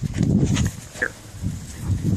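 A dog grumbling low and rough, loudest in the first half second and again briefly near the end.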